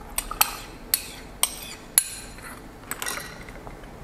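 Ice cubes and glassware clinking: about half a dozen sharp, separate clinks, with a small cluster about three seconds in, as iced latte is poured over ice in a tall glass and the glasses and a glass measuring jug are handled on a counter.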